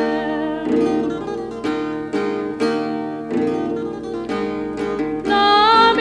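Sardinian cantu in re played on acoustic guitar: strummed chords about once or twice a second between vocal phrases. A woman's voice with a strong vibrato comes back in about five seconds in.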